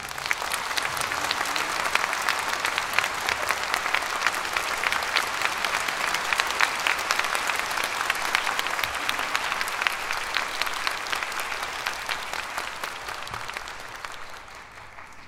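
Audience applauding: steady, dense clapping that slowly tails off near the end.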